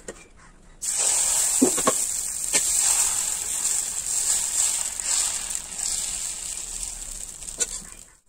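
A steady hiss starts suddenly about a second in and fades out near the end, with a few light clicks in its first couple of seconds.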